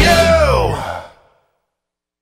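The end of a rock song: a last note slides down in pitch and the music dies away, stopping about a second in.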